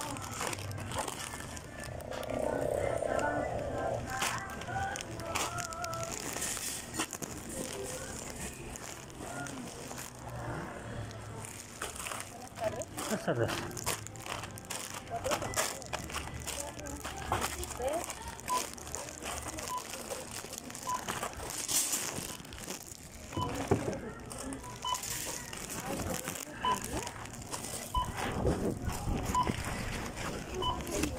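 Plastic snack bags crinkling against the microphone over store background noise with indistinct voices. In the last several seconds comes a run of short high beeps, about one a second, typical of a checkout barcode scanner.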